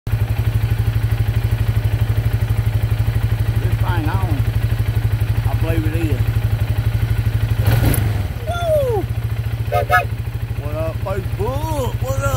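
Four-wheeler (ATV) engine running steadily, a loud low pulsing drone, with a brief clatter about eight seconds in.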